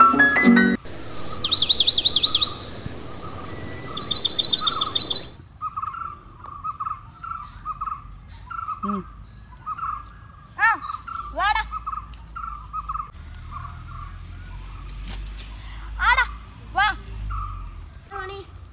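Birds calling. Two loud bursts of rapid high trilled chirps come in the first five seconds. After that, short notes repeat steadily, with several long downward-sweeping calls, two around the middle and two near the end.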